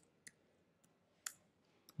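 Faint, scattered keystrokes on a computer keyboard: about five separate key clicks, the loudest a little past the middle.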